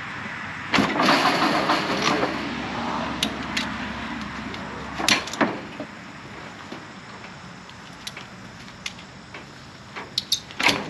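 Kick-start attempt on a KTM 300 two-stroke dirt bike. About a second in, a sudden rattling burst as the kick turns the engine over lasts a second or two, fades, and the engine does not catch. Two sharp clicks follow about halfway through.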